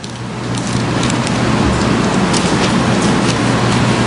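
Steady rushing background noise with a low hum, building up over the first second and then holding, with a few faint clicks or rustles through it.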